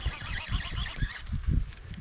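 Gusts of wind buffeting the microphone, with a baitcasting reel being cranked as a small bass is reeled in to the bank.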